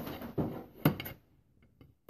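Table knife cutting through a brownie on a ceramic plate, with one sharp knock of the knife against the plate a little under a second in, followed by a few faint ticks.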